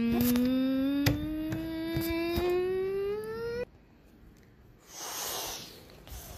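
One long held vocal tone that climbs slowly in pitch and stops abruptly about three and a half seconds in, with a few light knocks over it. A brief rushing hiss follows near the end.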